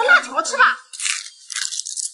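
A plastic snack packet being torn open by hand: two short crackling rips, the first about a second in and the second just before the end.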